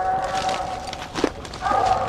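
Treeing Walker coonhound baying at a tree: a long drawn-out note that fades about half a second in, a short bark just past a second in, and another long note starting near the end.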